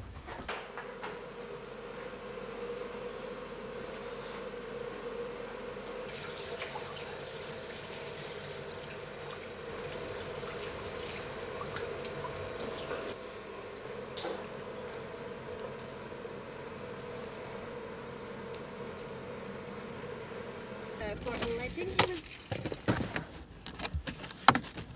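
A tap running into a washbasin for several seconds while water is splashed on the face, over a steady hum. Near the end come several loud knocks and clatter.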